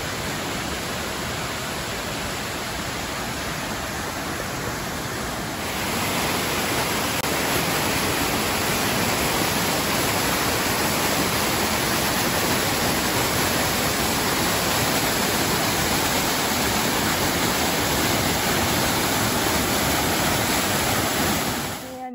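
Waterfall pouring: a steady rush of falling water. It gets louder and brighter about six seconds in.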